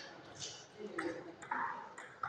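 Table tennis ball tapping lightly, under faint voices in a sports hall.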